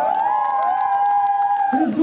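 Several voices holding one sung note together. They slide up into it at the start and break off just before the end.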